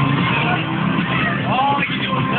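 Busy bowling alley din: loud music and voices over a steady low rumble.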